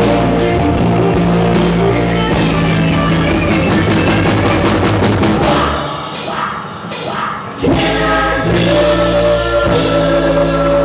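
A live rock band playing with electric guitars and drums. The bass and drums drop away for about two seconds past the middle, then the full band comes back in.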